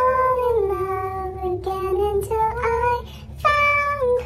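Three women singing together in harmony inside an elevator, holding long notes that slide slowly in pitch. They break off briefly about three seconds in, then come in loudly on a new note.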